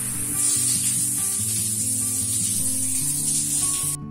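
Water spraying from a wall-mounted shower head, a steady hiss that comes up about half a second in, with soft background music underneath.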